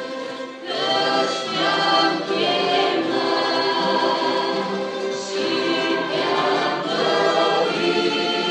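Church orchestra playing a hymn with a body of voices singing along. The music dips briefly, then swells back up about a second in and stays full.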